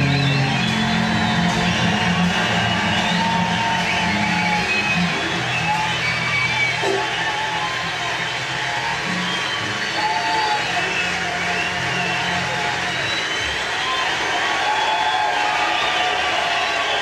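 Electric bass guitar holding long low notes over a jazz recording, with high wavering tones above; the low notes thin out about 13 seconds in.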